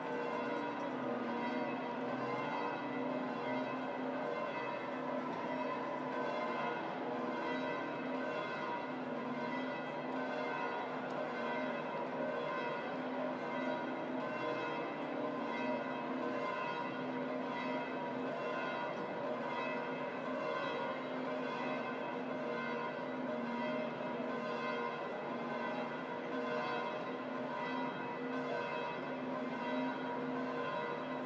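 The bells of St. Peter's Basilica pealing continuously, several large bells ringing over one another with no pause.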